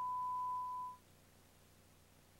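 A single steady electronic beep, one pure high tone lasting a little over a second and stopping about a second in, over the faint hiss of the broadcast feed.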